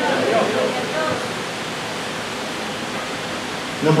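A steady, even hiss of background noise that holds at one level, with faint traces of voice in the first second.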